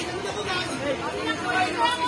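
Several people talking at once: overlapping chatter of a gathered group.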